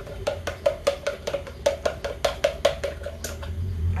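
A utensil beating eggs with onion in a plastic bowl: quick, even clicks against the bowl's side, about five a second, that stop shortly before the end.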